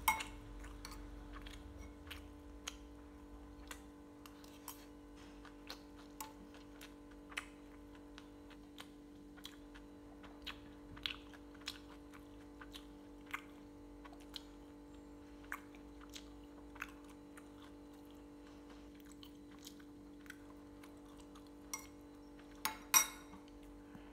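A person eating rice: a metal spoon clinking and scraping against a ceramic bowl, with chewing and small mouth clicks in between. The clinks are short and scattered, sharpest right at the start and twice close together near the end, over a steady low hum.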